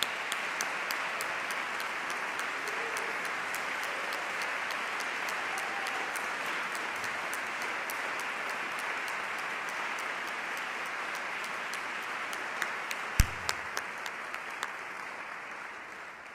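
Audience applauding steadily, easing off a little near the end. A single sharp thump stands out about thirteen seconds in.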